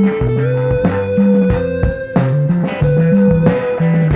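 Guitar-led rock music: a long held note over a stepping bass line and steady drum hits.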